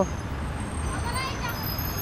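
Outdoor background ambience: a steady low traffic rumble with faint voices of passers-by, one voice briefly heard about a second in.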